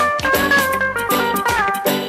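Live band playing instrumental music: electric guitar and Yamaha keyboard over a drum beat, with a held melody line whose notes slide down in pitch near the end.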